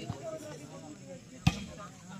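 A volleyball struck hard by hand once, a sharp smack about one and a half seconds in, over the chatter of spectators' voices.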